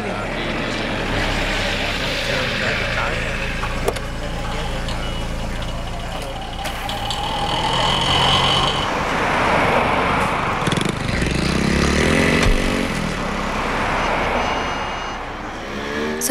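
Busy city street traffic: cars and an auto-rickshaw driving past with engines running steadily, and a few short high steady tones in the middle and near the end.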